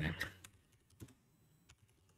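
Faint, sparse keystrokes on a computer keyboard as a line of text is typed.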